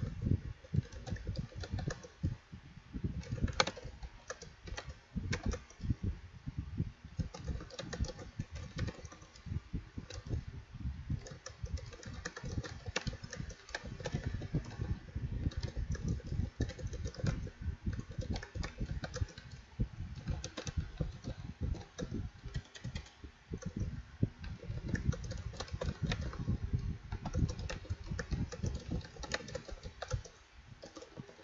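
Rapid, continuous typing on a computer keyboard: a dense run of key clicks with only brief pauses.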